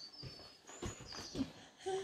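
A baby's faint breathy mouth sounds and small high squeaks while being fed, then a short high-pitched vocalization near the end.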